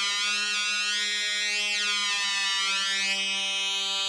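Eurorack modular synth voice holding one steady, bright pitched tone near G below middle C. Its pitch is set by a ribbon controller through an Arduino DAC and slides slowly down the last part of a semitone glide from A-flat to settle on G.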